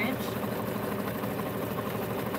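Electric sewing machine running at a steady speed, its needle stitching rapidly as it sews a quarter-inch seam along the edge of two layered fabric squares.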